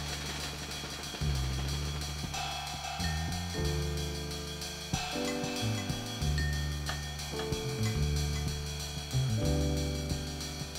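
Band music: a drum kit keeps a fast hi-hat and cymbal beat over a bass line and held chords that change every second or so.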